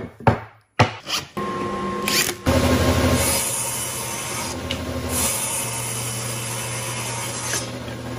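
A few short wooden knocks as boards are set down, then a table saw running and ripping a thin strip off a pine board, with a steady motor hum and the hiss of the blade cutting, louder from about two and a half seconds in.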